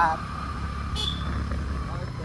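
Motorcycle running at a steady cruising speed, a steady low drone with a faint steady tone above it; a brief high chirp about halfway through.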